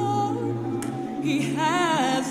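Several voices singing a cappella in held, wavering notes with no instruments; a higher voice comes in with a rising line about a second and a half in.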